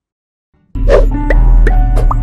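A moment of silence, then an outro logo jingle starts abruptly: a deep, loud bass tone with a few short pitched blips over it.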